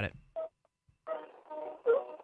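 A man's voice over a telephone line, thin and narrow-sounding, starting about a second in after a short pause. The studio host's voice ends the word "it?" at the very start.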